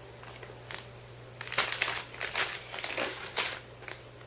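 Shiny food pouches crinkling as they are handled and lifted out of a plastic bucket, in a run of irregular crackling rustles starting about a second and a half in.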